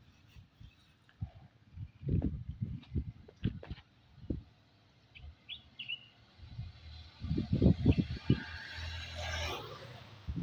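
Outdoor ambience with wind rumbling on the microphone in uneven gusts and a couple of short bird chirps about halfway through. Near the end a passing motor vehicle's engine and tyre noise swells up.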